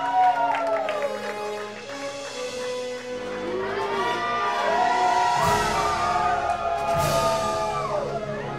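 Crowd cheering and whooping in a hall as a band takes the stage, with a keyboard starting to play sustained chords in the second half and a low bass layer joining about five and a half seconds in.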